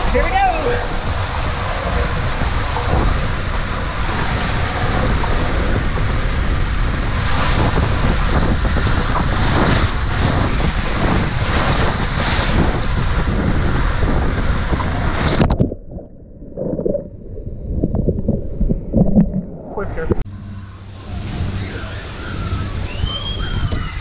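Water rushing and sloshing around a rider sliding through an enclosed tube water slide, picked up by a body-worn camera. About fifteen seconds in, the sound cuts off suddenly to a muffled, low surging, then turns to lighter splashing and hiss.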